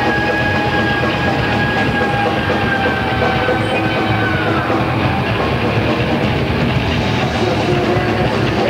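Thrash metal band jamming loud: rapid, dense drumming with a long held guitar note over it that slides down in pitch about four and a half seconds in.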